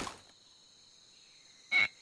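Near silence, broken about 1.7 s in by one short, high-pitched cartoon sound effect, a quick blip as a character's eye snaps wide open.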